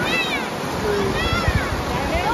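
Water rushing down a low rock cascade, with high-pitched cries from bathers, two rising-and-falling calls, one at the start and one a little past the middle.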